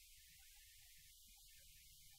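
Near silence: room tone with a faint, steady low hum and hiss.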